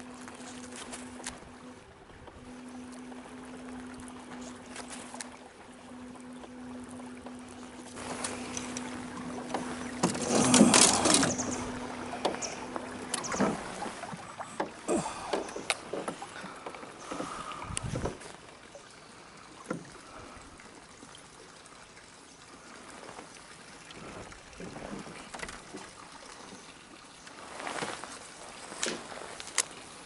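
Electric trolling motor running with a steady hum that drops out briefly twice and then stops about thirteen seconds in. A loud rustling burst just before it stops, followed by scattered knocks and clicks of handling around the boat's foot pedal and deck.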